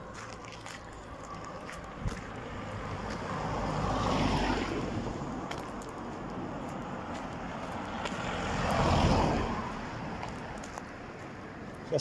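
Two cars drive past one after another on a road, each a swell of engine and tyre noise that builds and fades, about five seconds apart; the second is a little louder.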